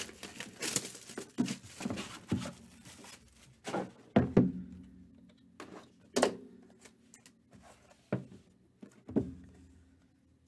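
A sealed cardboard trading-card box being opened by hand. Crackling and rustling of its seals and wrapping being pulled off fill the first few seconds, then come several separate thumps as the lid is lifted and the inner box is slid out and set on the table.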